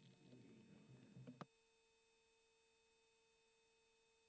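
Near silence. Faint low room sound lasts about a second and a half and ends in a click; after that only a faint, steady, pure electronic tone remains.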